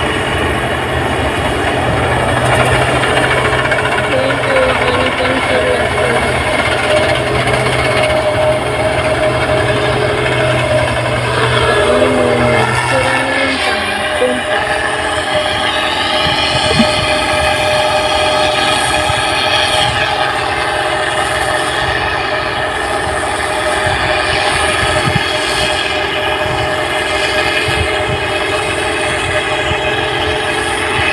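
New Holland 8060 combine harvester running as it cuts rice: a loud, steady, many-toned machine drone. Its tone changes about 13 seconds in, when a low hum drops out.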